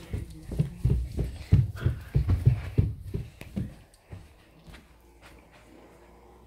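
Footsteps of a person in socks climbing carpeted stairs: a quick run of soft, deep thuds that stops about two-thirds of the way through.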